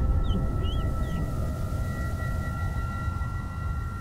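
Ambient drone soundtrack: two steady, high, ringing tones held throughout over a constant low rumble, with a few faint short chirps in the first second.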